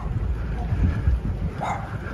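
Wind buffeting the microphone of a camera carried on a moving bicycle: a loud, uneven low rumble.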